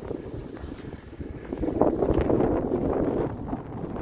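Wind buffeting a phone's microphone, a rough rumbling rush that swells a little before halfway and eases near the end.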